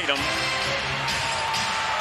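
Basketball game sound in an arena: a basketball dribbling on the hardwood court over crowd noise and arena music, with a held tone about a second in.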